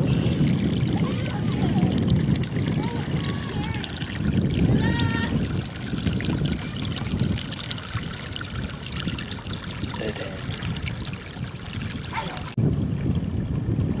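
Shallow stream water running and trickling around a submerged drain pipe, over a steady low rumble. Faint voices come through in the first few seconds, and the sound changes suddenly near the end.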